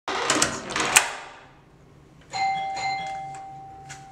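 A few sharp clicks in the first second, then an electronic hotel-room doorbell chime about two seconds in: one steady ringing tone that slowly fades.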